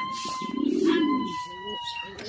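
Domestic pigeon cooing: one long, low coo starting about half a second in, then a short coo near the end.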